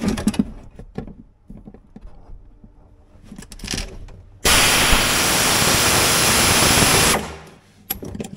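Quarter-inch pneumatic air ratchet run for about three seconds: a loud, steady hiss of exhaust air that starts and stops abruptly, working a bit into the plastic dash. Before it come light clicks and handling noises as the tool is positioned.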